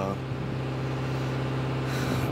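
Steady low mechanical hum of running machinery, an even drone.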